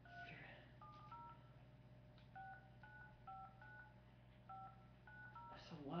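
Faint phone keypad touch-tones: about a dozen short two-tone beeps at an uneven pace as a long international phone number is keyed in.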